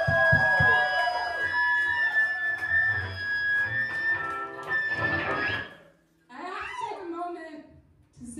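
A live rock band's final chord ringing out, with a few drum hits at the start, then cutting off almost six seconds in. A voice starts talking shortly after.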